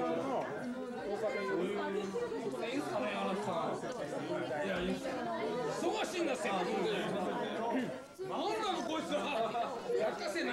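Several people talking loudly over one another in a crowded room, with laughter near the start.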